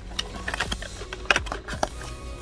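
Cardboard packaging of a Topps Merlin blaster box and a trading-card pack wrapper being handled: irregular crinkles and clicks, the sharpest a little past halfway and again near the end.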